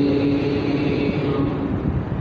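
A held, chanted vocal note fading out during the first second, over a steady low rumbling background noise.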